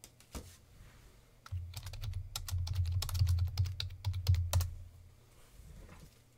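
A computer keyboard being typed on: a quick run of clicking keys for about three seconds, starting a second and a half in, with a low rumble beneath it.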